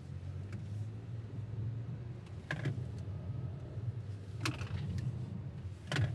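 Engine and road noise heard inside the cabin of a Proton X50 SUV driven through a slalom and U-turn: a steady low rumble. A few brief clicks or knocks come about halfway through and near the end.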